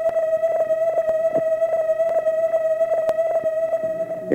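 A single sustained tone held steady at one pitch, with faint ticks about four times a second behind it: a drone in an old film's soundtrack score.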